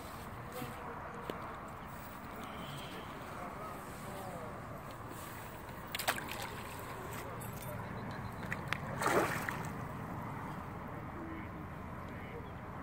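A hooked carp thrashing at the surface near the bank, with a short splash about nine seconds in, over steady outdoor background hiss. A sharp click comes about six seconds in.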